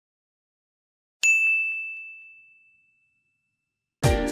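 Silence, then a single bright ding about a second in that rings out and fades over about a second and a half, with a couple of faint echoing taps: a logo-animation sound effect.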